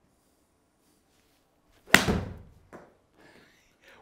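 A golf club striking a ball off a hitting mat: one sharp, loud crack about two seconds in that rings out briefly in a small room, followed by a fainter knock.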